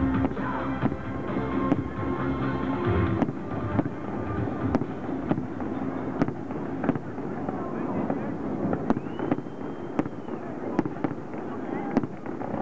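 Aerial firework shells bursting, with sharp bangs at irregular intervals about once a second. Music from the show's sound system plays under them and cuts off about three seconds in.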